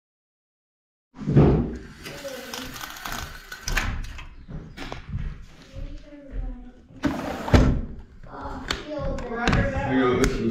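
Silent for about the first second, then indistinct voices with a run of knocks and thumps from handling, the loudest a little past halfway.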